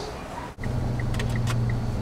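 Car cabin noise: a steady low engine and road drone begins suddenly about half a second in, with faint short high ticks about three times a second.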